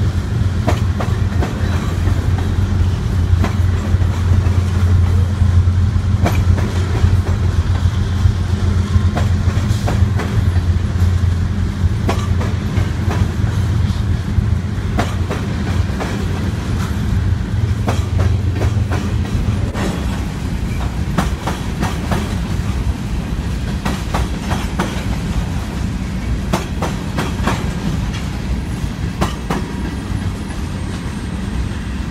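Freight train of loaded covered hopper cars rolling past, with steel wheels clacking over rail joints against a steady low rumble. The rumble eases about two-thirds of the way through while the clacking carries on.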